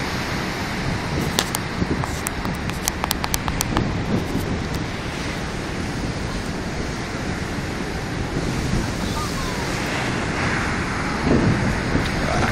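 Wind buffeting the phone microphone over the steady rush of breaking surf on a river bar, with a run of sharp clicks between about one and four seconds in.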